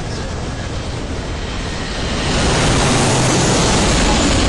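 Strong wind blowing across the microphone: a rough rumbling hiss that gets louder about two seconds in and stays loud.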